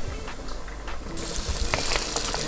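Hot cooking oil in a pot starts sizzling suddenly a little over a second in and keeps on frying, after a few faint clicks.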